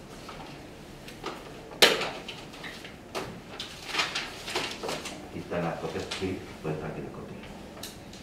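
Paper documents being handled and leafed through on a meeting table, with scattered sharp knocks and clicks, the loudest about two seconds in. Low murmured speech can be heard in the room near the end.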